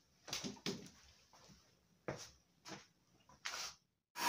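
A few faint, short knocks and rustles spread over a few seconds, about five in all: a person getting up from a seat and moving about.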